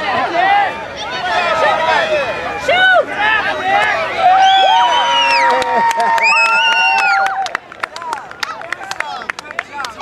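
Young children's high-pitched voices shouting and cheering over one another, with long held yells in the middle. From about seven and a half seconds in, the voices fall away and a run of sharp claps follows.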